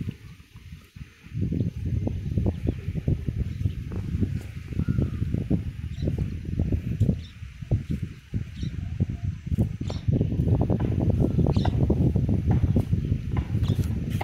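Wind buffeting the microphone in gusts: an uneven low rumble that dies down briefly about a second in and is strongest in the last few seconds.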